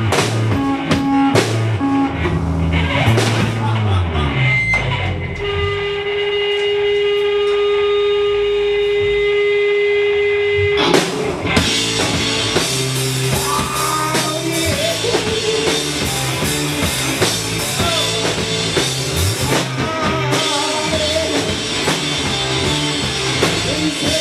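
Live rock band playing drums, bass and electric guitar. About five seconds in the drums drop out under one steady held note for some five seconds, then the full band comes back in with a male voice singing.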